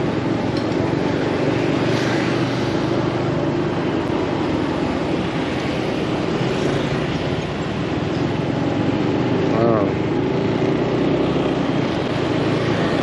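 Motorbike engine running steadily under way, with road and wind noise, heard from the rider's seat.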